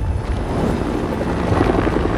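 Film trailer soundtrack: a loud, steady, dense rumbling noise with a heavy low end and no speech.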